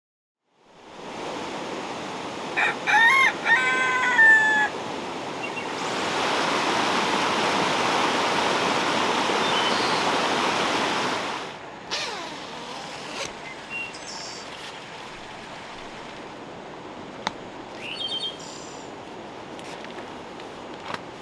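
Steady rain hiss with a rooster crowing several times, about three seconds in. The rain grows louder for about five seconds from around six seconds in, then drops back to a softer hiss with a few sharp ticks.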